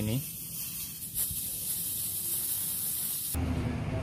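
Compressed air hissing steadily out of a leaking truck clutch booster (air servo), cutting off abruptly about three seconds in. The leak is very fast, from a worn rubber seal on the booster's large piston.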